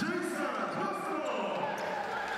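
On-court sound of a basketball game: a ball being dribbled on the hardwood and drawn-out, echoing voices of players calling out on the court.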